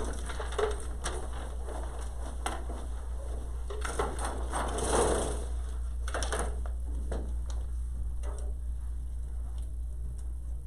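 A pull-down roller chart being handled: rustling and rattling as the sheet is pulled and then let roll back up to its roller, loudest about halfway through, with a few knocks before and after. A steady low hum runs underneath.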